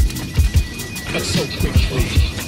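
Hip-hop beat: a deep kick drum about twice a second under fast, steady hi-hats, with a short stretch of voice about a second in.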